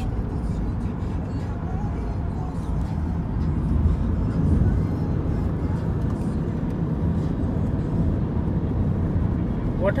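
Steady road and engine rumble inside the cabin of a moving car, swelling slightly about four seconds in.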